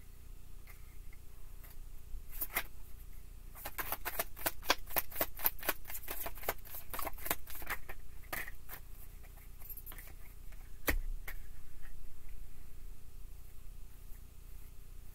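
A deck of tarot cards being shuffled by hand: a rapid run of card-edge clicks for about four seconds in the middle, with scattered single clicks around it. One heavier knock comes about eleven seconds in.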